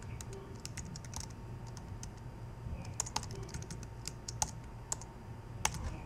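Typing on a computer keyboard: irregular keystrokes, with a steady low hum underneath.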